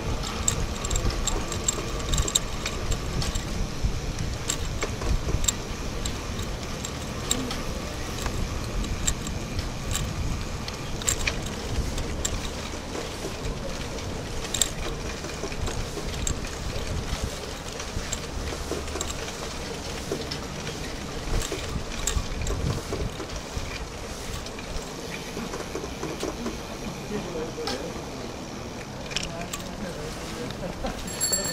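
Riding noise from a bicycle on a paved path: a steady low rumble with frequent small rattles and clicks.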